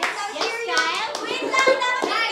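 Excited young women's voices with several sharp hand claps, after the dance music has stopped.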